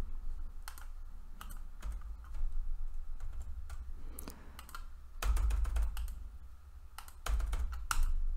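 Typing on a computer keyboard: scattered keystrokes, with quicker runs of keys about five seconds in and near the end, each run with a dull low thud.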